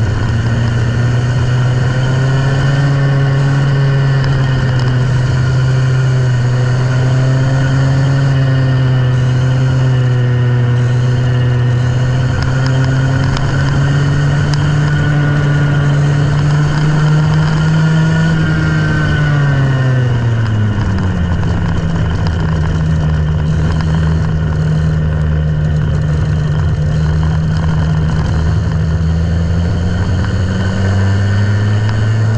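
Go-kart engine heard from on board, running steadily under load. About two-thirds of the way through the revs fall, and the engine then holds a lower, steady note.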